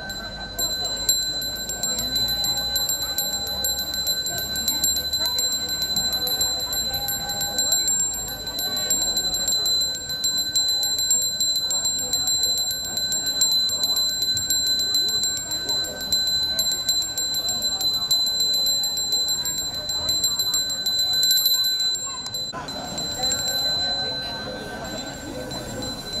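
Balinese priest's bajra hand bell rung continuously, a fast, steady, high ringing that stops about 22 seconds in, under a man's chanted prayer.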